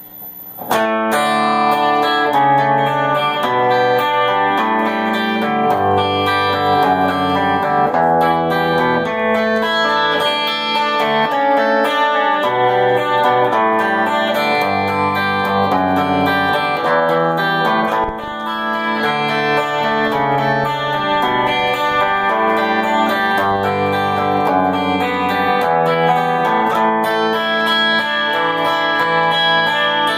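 Twelve-string electric guitar played with a flat pick, picking a running chord pattern with notes ringing into each other. It starts about a second in and goes on without stopping, apart from a brief dip around eighteen seconds.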